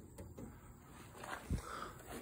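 A quiet pause with faint background noise and one soft, low thump about one and a half seconds in.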